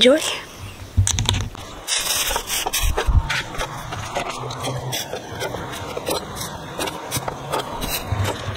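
Chef's knife cutting jalapeño peppers on a wooden cutting board: irregular knocks and scrapes of the blade against the board.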